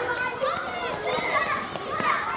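Many children's voices at once, overlapping chatter and calls with no single clear speaker.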